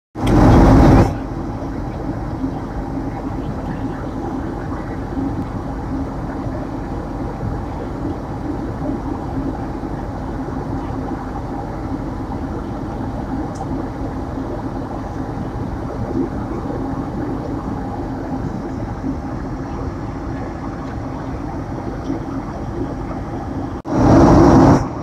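Steady cabin noise of a Boeing 767 airliner in flight: the even drone of its jet engines and rushing air, with a faint low hum running through it. It opens with a loud burst of noise lasting about a second.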